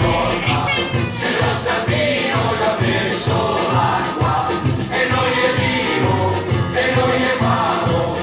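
A song with a group of voices singing over a steady, pulsing bass beat.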